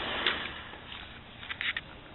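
Quiet indoor room tone with a short click a quarter second in and a quick cluster of three or four light clicks and knocks about a second and a half in.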